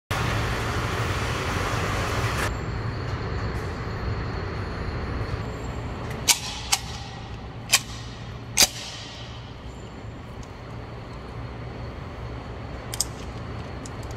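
Steady low rumble of an indoor shooting range, with an even hiss that cuts off after about two and a half seconds. Midway through come four sharp cracks, each ringing out in a short echo.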